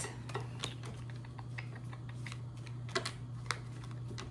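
Irregular light clicks and taps from tarot cards being handled on a table, over a steady low hum.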